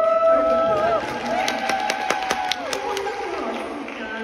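High voices calling out long held notes, a first one for about a second and then a second at a slightly higher pitch, with a quick run of claps in the middle.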